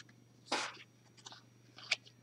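Oracle cards being handled: a card is lifted and slid off the deck, giving a few short papery rustles. The first and loudest comes about half a second in.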